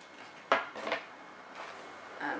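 A sharp hard click about half a second in, with a smaller one just after it, as a plastic hairbrush is handled against the hair.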